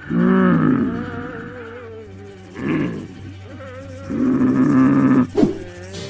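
Loud roar-like calls come in three bursts: a long one at the start, a short one, then a longer one, with a sharp crack right after the last. A steady low hum runs underneath.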